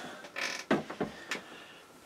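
Handling noises at a top-loading washing machine: a brief scrape about half a second in, then a few light knocks, as things are moved and set down around the open washer tub.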